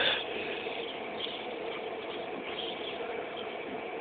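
Faint rustling and scuffing of grass as a dog rolls and wriggles on its back, over a steady background hiss.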